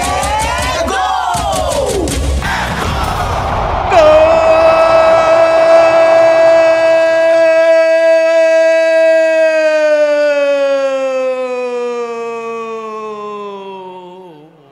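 A Brazilian football commentator's long drawn-out goal shout, 'gooool', for a converted penalty. It comes after a few seconds of excited yelling over crowd noise, then is held on one steady loud note for about eight seconds, sinking in pitch and fading near the end.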